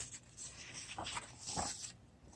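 Faint rustle of a paperback coloring book's paper page being turned, a soft sliding hiss with a couple of slightly louder flaps about one and one-and-a-half seconds in.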